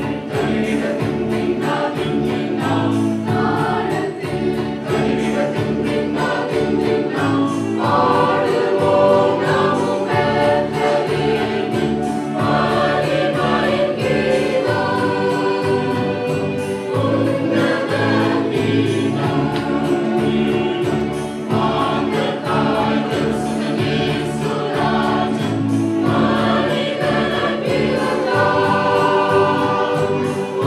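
A mixed choir of children and adults singing a Christmas carol together, continuously.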